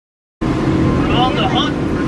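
Cuts in from dead silence about half a second in to a motorboat's engine running with a steady drone, heard inside the boat's cabin, with voices over it.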